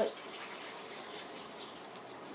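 Steady, even rushing hiss with no pitch or rhythm, much fainter than the talking around it.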